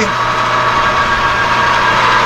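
Metal lathe running steadily while facing a scrap steel gear held in the chuck: an even machine hum with a constant high whine.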